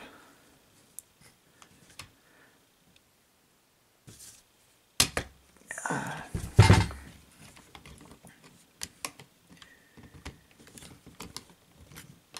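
Two sharp hammer taps on the end of a screwdriver used as a punch, about a second and a half apart, the second the louder, driving a loose knee pin tighter in a diecast toy robot's leg. Light clicks of metal and plastic toy parts being handled come before and after.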